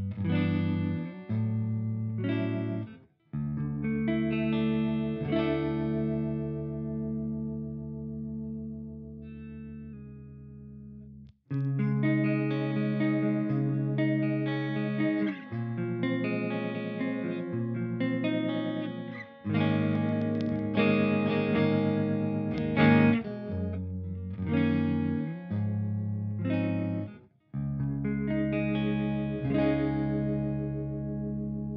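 Clean electric guitar loop, strummed chords and ringing notes with a few short breaks, played through the Fractal Audio Axe-FX III pitch block in virtual capo mode. It is shifted down two semitones at first and three semitones by partway through.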